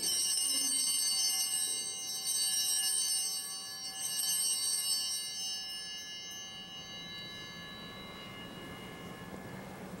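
Altar bells rung at the elevation of the chalice: bright, high ringing struck three times about two seconds apart, then dying away over several seconds.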